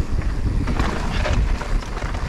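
Wind buffeting the microphone of a camera on a moving mountain bike: a steady low rumble, with faint rattles from the bike rolling over the ground.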